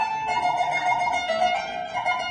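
Kanun, the Turkish plucked zither, playing an instrumental phrase of a Turkish folk-song melody in plucked notes, with no singing.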